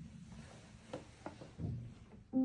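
A few faint soft knocks and rustles as a player settles at an upright piano with hands on the keys, before any notes are played.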